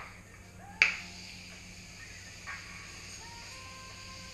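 Makeup setting spray misting onto a face: a sharp click as the nozzle is pressed about a second in, then a steady hiss of spray for about three seconds.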